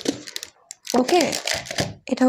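Light clicks and rattles in the first half second as a plastic tray of glass injection vials is handled and set down on a glass counter, followed by about a second of a woman's voice.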